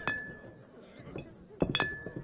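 Two sharp clinks about a second and a half apart, each ringing on briefly with a clear tone, over a low murmur of voices.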